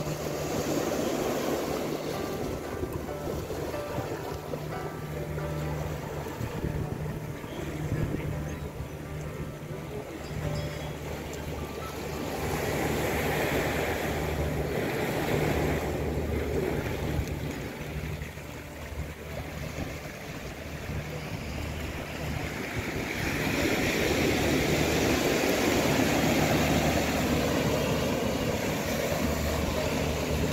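Small sea waves washing onto a sandy beach, a steady surf hiss that swells louder twice, in the middle and near the end, with soft music underneath.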